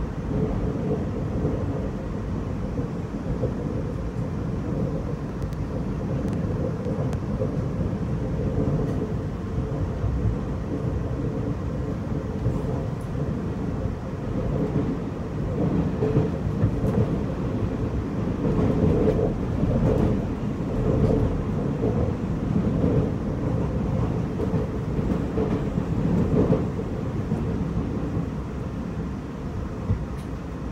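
Steady low rumble of a TEMU2000 Puyuma tilting electric multiple unit running, heard inside the passenger car as it approaches its station stop, easing a little near the end.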